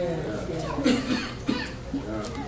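A short laugh and a cough, with held musical tones beneath and a sharp click about one and a half seconds in.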